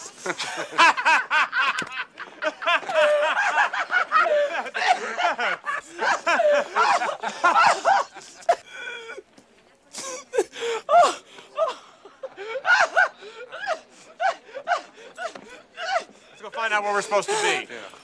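Several men laughing in repeated fits, with a brief lull about halfway through.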